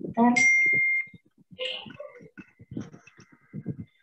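A short, loud, steady high-pitched electronic beep, under a second long, right after a spoken word. Faint voices follow, with a faint high tone lingering.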